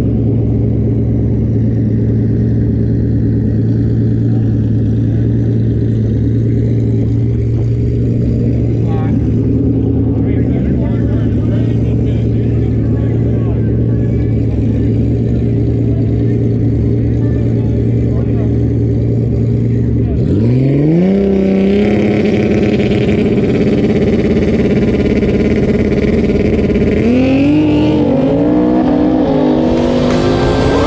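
Twin-turbo Coyote 5.0 V8 in a 2014 Mustang idling steadily. About two-thirds of the way in it revs up sharply and holds at a higher rpm, and near the end the revs rise and fall again as the car builds revs at the start line.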